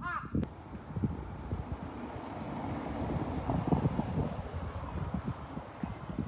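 Outdoor ambience of wind rushing over the microphone, with irregular low thuds of footsteps as the walker moves along. A short bird call sounds right at the start.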